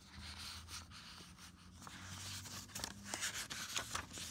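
Faint rustling and handling of a picture book's paper pages, with a few light clicks and taps near the end, over a faint steady low hum.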